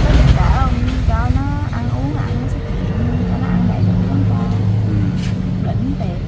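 A motor vehicle engine running close by: a low rumble at the start, then a steady low hum that grows stronger about halfway through, under scattered low speech.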